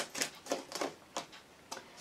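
A deck of oracle cards being shuffled and handled by hand: a run of short, irregular card flicks and taps, about half a dozen in two seconds.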